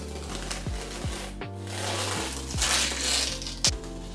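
Blue painter's tape being peeled and ripped off a painted canvas: a long tearing rasp that swells about two and a half seconds in. Lo-fi beat music with a thumping bass drum plays along.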